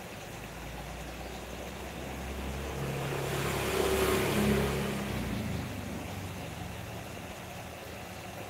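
A low motor hum that swells to a peak about four seconds in and then fades away, as of a vehicle passing by.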